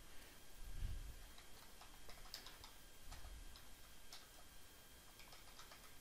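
Faint, irregular clicking of computer keyboard keys as a short note is typed, with a soft low thump about a second in and another about three seconds in.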